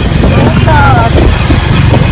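Steady low engine and road rumble of a moving vehicle heard from on board, with voices over it.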